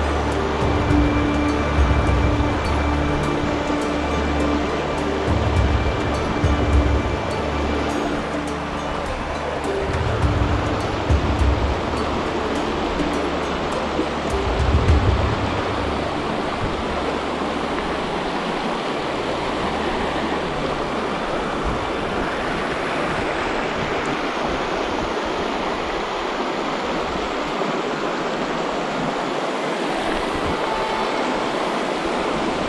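Steady rush of a shallow, fast river riffle. Background music with low sustained tones runs over it in the first half and fades out about halfway through.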